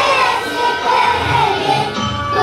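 A group of young children singing together in unison.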